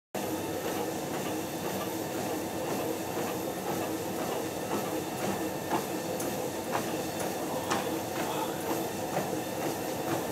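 Motorized treadmill running on a steep 24% incline, its motor and belt droning steadily, with faint footfalls about once a second.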